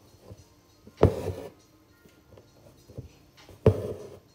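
Needle and six-strand embroidery floss pulled through drum-taut fabric in an embroidery hoop, twice: each a sharp pop followed by a short scratchy drag of thread, about a second in and again near the end.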